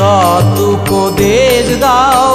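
Devotional song to Sati Maa playing as background music: a wavering melody line over a steady drum beat, with no sung words in this stretch.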